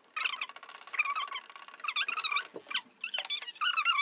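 Sped-up voices turned into high-pitched, squeaky chipmunk-like chatter, in short bending bursts with a couple of brief gaps.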